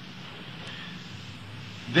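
Steady hiss over a low, even hum: the background noise of an old tape recording.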